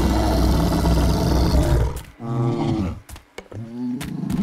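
A huge dinosaur's roar, a loud harsh sound lasting about two seconds, followed by two shorter, lower pitched calls that slide down in pitch.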